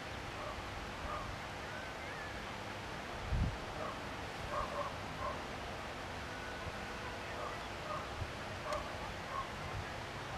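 Open-air rural ambience: a steady hiss with scattered short, faint calls of distant animals, and a low thump of wind on the microphone about three and a half seconds in.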